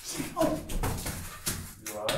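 A person's voice mixed with shuffling and knocking noises as someone moves about in a crawl space.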